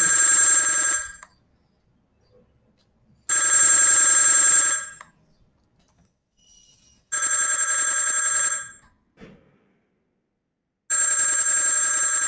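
Linphone softphone ringtone playing on the computer for an incoming SIP call: a repeating electronic ring in bursts of about a second and a half, roughly four seconds apart, four rings in all.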